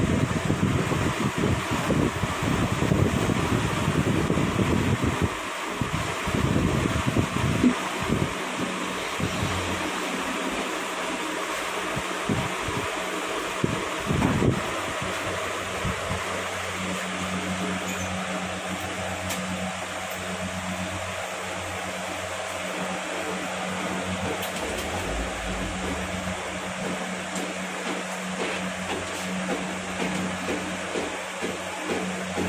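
Steady mechanical hum like a running fan, with low rumbling noise over the first five seconds or so and a few faint knocks.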